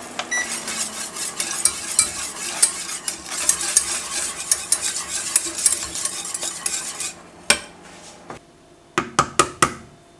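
Wire whisk stirring a thickening flour-and-milk soufflé base in a saucepan, its wires scraping and clicking rapidly against the pan. The stirring stops about seven seconds in. A single click follows, then a quick run of four sharp clicks near the end.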